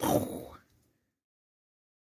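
A person's short breathy vocal sound, an exhale, cut off about half a second in, leaving silence.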